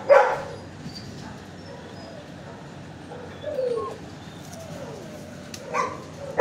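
Shelter dogs in kennels barking: a loud bark right at the start and more barks just before the end, with a short falling whine about halfway through.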